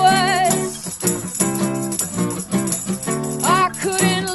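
Acoustic folk-pop song played live: steel-string acoustic guitar strummed in chords, a tambourine jingling in rhythm, and a woman singing a held, wavering phrase at the start and another phrase near the end.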